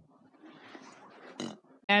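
Faint sounds from a guinea pig close to the microphone, then a short sharp rustle or knock about one and a half seconds in.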